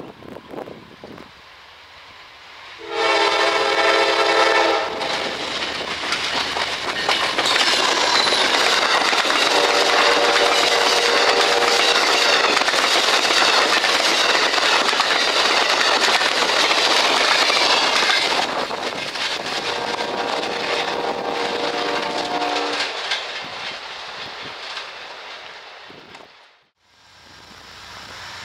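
Amtrak passenger train passing close by at speed. Its horn sounds about three seconds in, then the locomotive and cars go by loudly with wheels clattering over the rails, and the noise fades away near the end.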